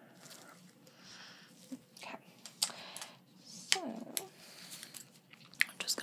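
Close-miked ASMR mouth sounds: scattered wet tongue clicks and smacks, coming irregularly with short gaps between them.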